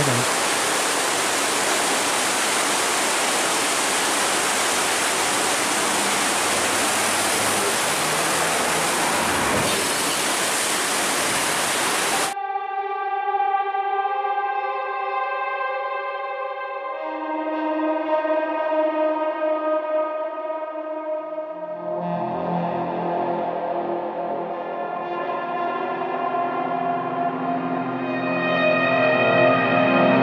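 A steady rush of water from the strong current pouring through an open sluice gate, cut off abruptly about twelve seconds in and replaced by instrumental background music.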